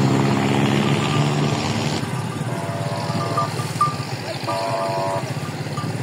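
A steady low engine drone, with two short higher-pitched tones about halfway through, the second a second after the first.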